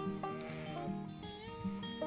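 Background music with held notes that change pitch in steps.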